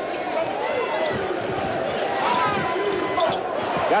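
Basketball arena crowd noise during live play, a steady murmur of many voices, with a few short squeaks of sneakers on the hardwood court.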